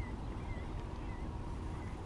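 A steady low rumble of outdoor ambience, with a few faint, short bird calls spread through it.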